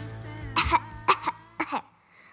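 A person coughing about four times in quick succession while the song's music fades out underneath.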